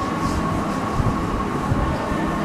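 A whiteboard being wiped clean by hand, with soft rubbing strokes, over a steady background hum and low rumble in the room.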